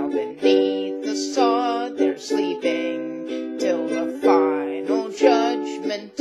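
Ukulele strummed in steady chords, with a woman's voice singing a folk ballad over it.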